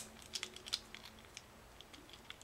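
Faint, scattered light clicks and handling noise of a small plastic toy figure being turned over in the hands.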